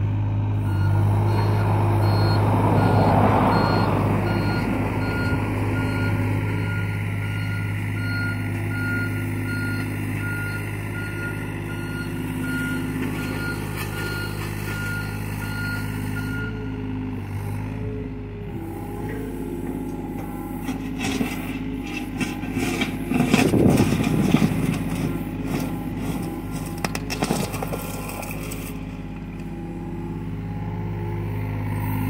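Diesel engine of a John Deere 35G compact excavator running steadily, with its motion alarm beeping regularly for roughly the first half. In the second half come clanks and scraping as the bucket digs into dirt and rock, loudest a few seconds before the end.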